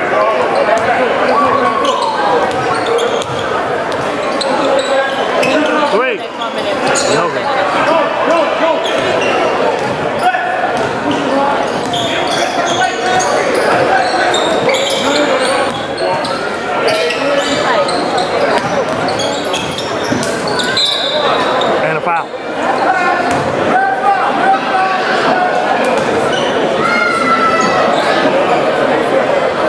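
Indoor basketball game in a gymnasium: a basketball dribbled on the hardwood floor amid constant overlapping chatter and calls from players and spectators, all echoing in the hall.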